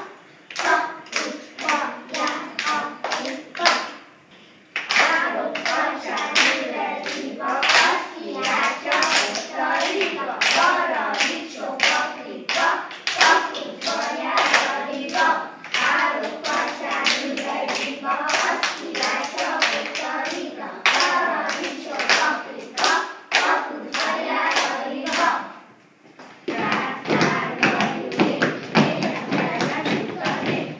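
A group of young children clapping a steady beat, about two claps a second, and chanting a rhyme in unison over it from about five seconds in. After a short pause near the end, a denser stretch of clapping and voices starts.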